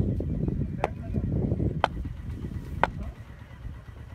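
Low rumble of wind on the microphone, with three sharp knocks evenly spaced about a second apart.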